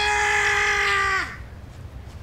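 A person's voice: one long, high, steady yell held for just over a second, then breaking off.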